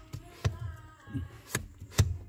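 Two light knocks, about half a second and a second and a half in, over a faint low rumble: handling noise from a phone being moved about.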